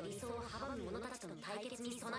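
Audio from the anime episode: a drawn-out, voice-like pitched sound that wavers up and down in pitch several times.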